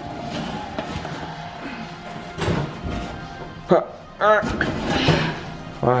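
Background music, with a cardboard parcel being yanked out of a tight parcel-locker compartment and a thump about two and a half seconds in; a person's voice breaks in briefly past the middle.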